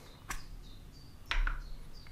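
Two sharp clicks from handling a clip-on phone microscope lens and its lens cap as the cap is taken off. The first is weaker and comes about a third of a second in; the second, about a second later, is louder and carries a low thud.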